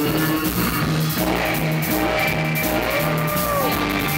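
Instrumental surf rock: electric guitar and bass guitar over a drum kit, the bass repeating a steady line. About three seconds in, a high note glides up, holds briefly and bends back down.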